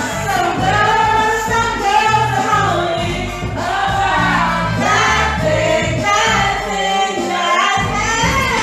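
Karaoke singing over a backing track: a sung vocal line in phrases, with bass notes stepping underneath.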